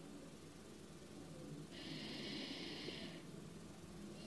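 A single slow breath, about a second and a half long, near the middle, heard as a soft hiss; otherwise a quiet room.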